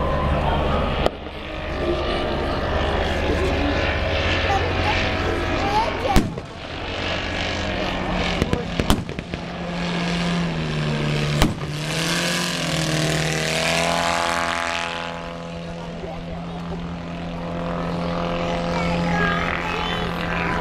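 Propeller aircraft engine droning as planes fly past. Its pitch dips and then rises around the middle, and it swells on a close pass soon after. Sharp cracks come about six seconds in and again around eleven seconds, over crowd voices.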